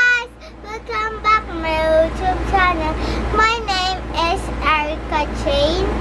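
A young girl singing in a high, sing-song voice, over a steady low hum.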